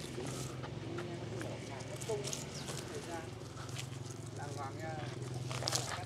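Voices talking in the background over a steady low hum, with a few sharp snips of pruning shears cutting branches, the sharpest one near the end.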